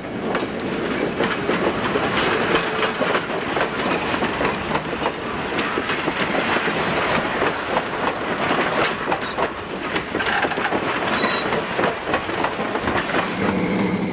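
Passenger train rolling slowly through a yard, its wheels clacking over rail joints and switches in an irregular rattle.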